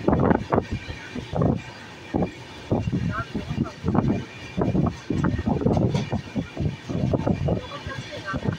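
People talking over the running noise of a moving train, heard from inside the coach.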